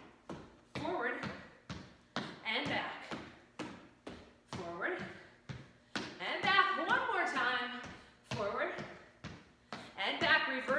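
A woman's voice in short bursts, over sharp taps and thumps from feet stepping on a wooden floor during a kettlebell exercise.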